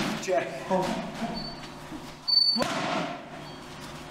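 Boxing gloves punching focus mitts in pad work: sharp slaps of jabs landing, one right at the start and another about two and a half seconds in, with the coach calling "one" for the jab.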